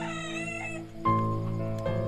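A rooster crowing once, a wavering call lasting about a second, over background music of held notes, with a new note coming in about a second in.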